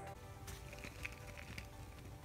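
Quiet background music with a few faint clicks as small toy figures rattle inside two plastic trash-can blind capsules being shaken.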